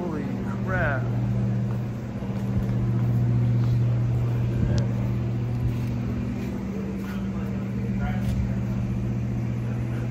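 Steady low mechanical hum at an unchanging pitch, like an engine or machine running, slightly louder around three to four seconds in; brief voices near the start.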